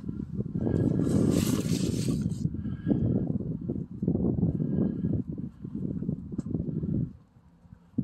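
Uneven rumbling noise on a handheld phone's microphone, with a brief hiss about a second in; it stops abruptly about seven seconds in.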